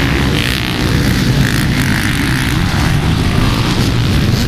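Many off-road dirt bike engines running together as a pack of racers rides past in a loud, steady drone.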